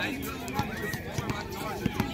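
Several voices talking and calling out at once on an outdoor basketball court, with scattered short low thuds from the court, the sharpest near the end.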